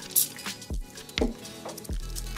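A short hiss of WD-40 sprayed from an aerosol can onto a metal plate just after the start, then a few faint clicks, over soft background music.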